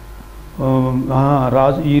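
A man's voice preaching in a drawn-out, sing-song delivery, starting about half a second in after a brief pause, over a low steady hum.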